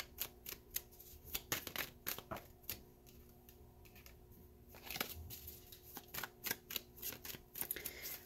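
A deck of tarot cards shuffled by hand: a run of soft card flicks and slaps, which pauses for about two seconds in the middle.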